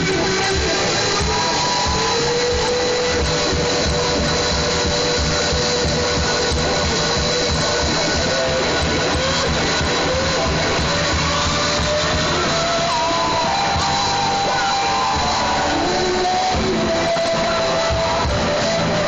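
Rock band playing live with electric guitars and drums, heard from the audience. Long held notes bend and slide above the band, and the sound stays loud and even throughout.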